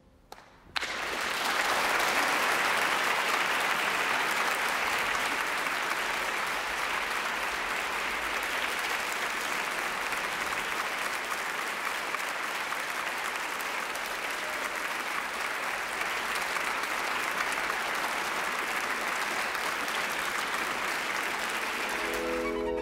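Audience applauding in a large hall. The applause breaks out suddenly about a second in, after a brief hush as the violin falls silent, then holds steady.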